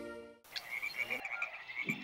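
The tail of background music fades out, then a frog calls in a quick run of short, high chirps at one pitch, several a second, over faint forest ambience.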